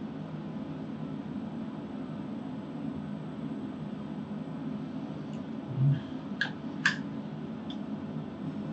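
Steady low fan-like hum in a small room, with a dull thump about six seconds in, two sharp clicks just after it, and a fainter click near the end.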